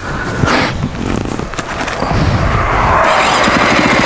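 A KTM enduro motorcycle's single-cylinder engine running just after it has been started. It runs unevenly at first, then settles into a steady, rapid beat from about halfway through.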